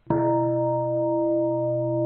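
A large Buddhist bowl bell struck once just after the start, then ringing on with several steady, slowly wavering tones.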